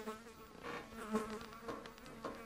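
Flies buzzing steadily, a low droning hum that wavers slightly in pitch and loudness.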